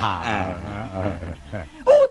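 A voice crying out a long, wavering 'aah' that falls in pitch, then a short, higher 'ah' near the end.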